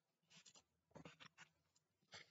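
Near silence, broken by a few faint, brief rustles as hands handle a cap on the head.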